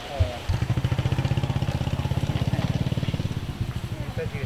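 A small engine running with a fast, steady low pulse that starts about half a second in.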